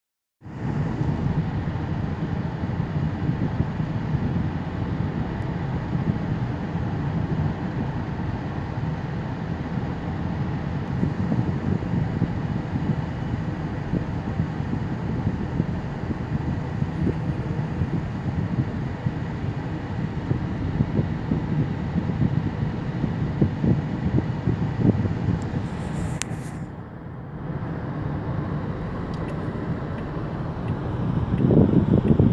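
Steady road and engine noise heard inside a moving car's cabin, a low rumble that runs evenly and dips briefly in level near the end.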